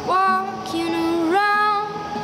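A woman singing long held notes over a steel-string acoustic guitar, her voice sliding up into a new note partway through.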